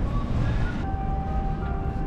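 Low, uneven outdoor city rumble of street noise and wind, with faint steady tones coming in about a second in.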